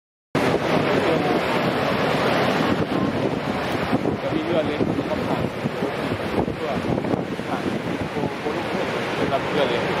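Steady rushing of water from Niagara's Horseshoe Falls pouring over its brink, with wind buffeting the microphone. The sound cuts in abruptly just after the start.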